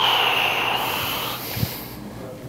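A person's sharp, hissing breath that starts suddenly, loudest at first and fading over about a second and a half: a wince of pain as a gout-sore foot is pressed. A soft thump near the end.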